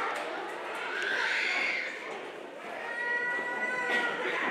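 A child's voice through the hall's microphone: a drawn-out cry that rises and falls about a second in, then a long, steady high-pitched call near the end.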